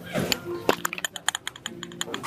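Rapid clicking of many camera shutters from a crowd of press photographers, thickest in the middle, over murmuring voices.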